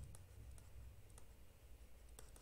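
Near silence, with a few faint clicks of a stylus on a pen tablet as handwriting is added to the slide.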